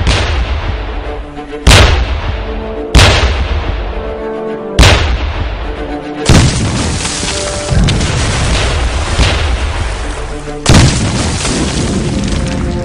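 Naval cannon firing over dramatic film music: five loud booms at irregular intervals a second or more apart, each dying away in a rumble, with the music running beneath.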